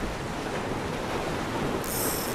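Sea waves and surf washing steadily, with some wind. A brief high hiss comes in near the end.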